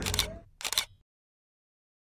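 Camera shutter sound effect: two quick clicks about half a second apart, as the outdoor background drops away.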